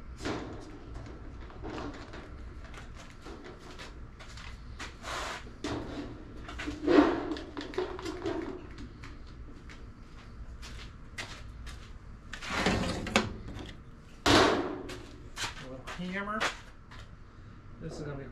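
Thin sheet metal being bent by hand on an improvised table-and-clamp setup: scattered knocks and clanks of the sheet and clamps, with a few louder bangs near the middle and about two-thirds of the way through.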